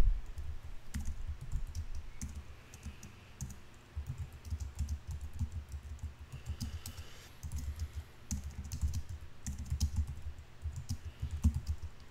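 Typing on a computer keyboard: keystrokes in quick runs with short pauses between them.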